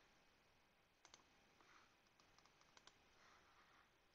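Near silence: room tone with a few faint computer-mouse clicks, a pair about a second in and another pair near three seconds in.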